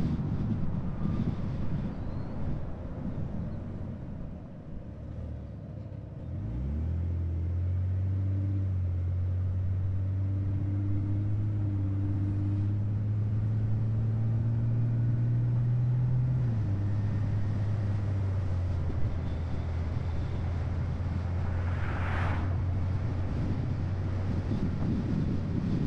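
Car driving: the road noise dies down as it slows to a stop a few seconds in, then the engine note rises as it pulls away, climbs steadily and drops at a gear change about two-thirds of the way through. A short rushing sound comes near the end.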